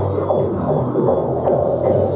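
Live electronic music played from a laptop and keyboard synth through a PA: a heavy throbbing bass line with sweeping synth tones, loud and muddy with little treble.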